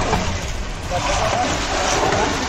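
Busy street ambience: a steady rumble of traffic with background voices talking.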